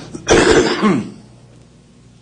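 A person coughs once, loudly, about a third of a second in; the cough lasts under a second.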